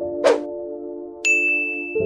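Video-editing sound effects over held background-music chords: a quick rising swish, then a single bright ding just over a second in that rings on past the end.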